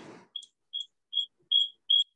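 A series of short, high electronic beeps of a single pitch, about two and a half a second, growing steadily louder, with a brief handling rustle at the start.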